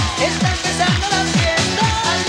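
Italian dance-pop track playing loud, driven by a steady four-on-the-floor kick drum at about two beats a second.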